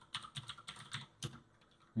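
Computer keyboard being typed on: a quick run of individual keystrokes, as a line of code (#include) is entered, pausing briefly near the end.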